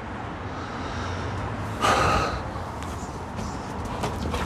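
A man breathes out heavily once, a short sigh about two seconds in, over a steady low hum.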